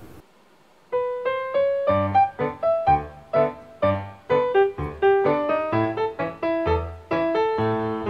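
Background piano music: a run of quick, separate piano notes that starts about a second in, after a brief drop to near silence.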